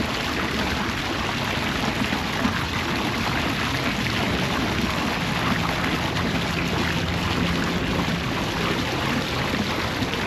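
Water spilling and splashing from a tiled fountain into its basin, a steady rushing noise.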